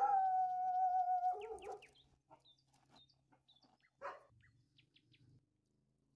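An animal's call: one long, steady cry of about a second and a half that breaks into short sliding notes at the end, followed by a brief single cry about four seconds in.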